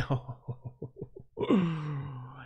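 A man laughing: a quick run of short chuckles, then a longer voiced sound that falls in pitch.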